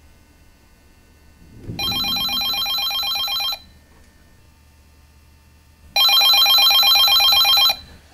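Corded desk telephone ringing twice, each ring about two seconds long with a rapid trill, the second ring louder: an incoming call.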